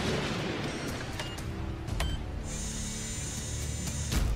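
Vending machine sound effect: a couple of clicks, then a steady high mechanical whir from about halfway through as it vends an item that gets stuck.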